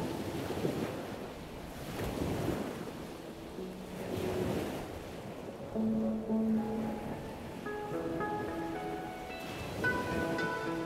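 Sea surf washing up a sandy beach, a surging rush that swells and falls back. Soft music tones come back in over the second half.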